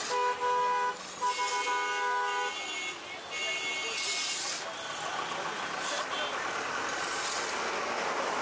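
A vehicle horn sounds two long blasts in the first two and a half seconds, then a shorter, higher horn toots, over steady street traffic noise. Between them come recurring scrapes of a metal ladle stirring in-shell peanuts in an iron wok.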